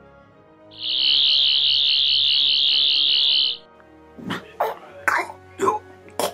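Sonic screwdriver sound effect: a high warbling whine held for about three seconds. A few moments after it stops, a series of harsh coughs and splutters, Sontarans choking on the toxins the blast has released.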